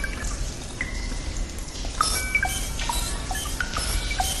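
Sound-design ambience of dripping water: scattered short, pitched drips at different heights over a steady low rumble.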